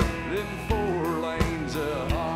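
Live honky-tonk band playing an instrumental break: an electric guitar lead with bending notes over a steady drum beat, a drum hit with a cymbal about every two-thirds of a second.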